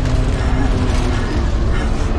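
Film sound effects: a loud, steady deep rumble with grinding and creaking, the sound of a huge crashed alien spacecraft.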